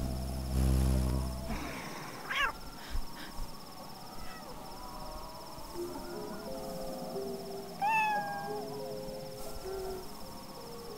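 A low droning hum stops about one and a half seconds in. A small animated creature then gives a short, sharp squeaky call, and near the end a longer call that falls in pitch, over soft held music notes.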